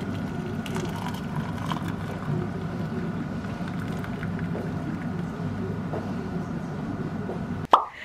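Water poured in a steady stream into a ceramic mug. It cuts off abruptly near the end.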